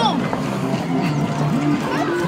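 Mixed voices of children and adults chattering and calling out over a steady background noise.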